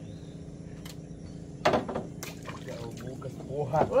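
Light splashing and trickling of water around a fishing line at the side of a small boat, with a few sharp clicks or knocks. There are brief bits of voice.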